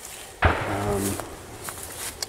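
A man's voice making a drawn-out hesitation sound ('uhh') that starts abruptly about half a second in and fades out over about a second.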